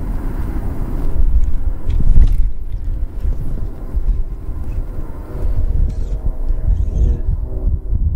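Wind buffeting the camera's microphone, an uneven low rumble that swells about one to two seconds in.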